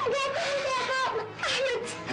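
A little girl crying in distress: a long wavering wail held for about a second, then a shorter falling cry.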